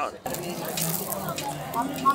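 Flaky croissant crust crackling as it is torn apart by hand, over faint background chatter of people.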